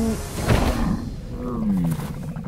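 A deep hit about half a second in, then a dragon's growling call that dips and rises in pitch.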